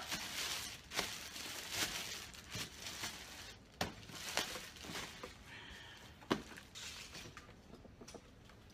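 Plastic shopping bag and packaging crinkling and rustling as boxed camera gear is pulled out and handled, with scattered light knocks of boxes being set down. The sounds taper off toward the end, and there is a faint short high squeak a little past halfway.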